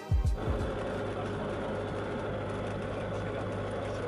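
Music stops about a third of a second in, giving way to the steady drone of a light aircraft's engine and propeller, picked up by a camera mounted under the wing.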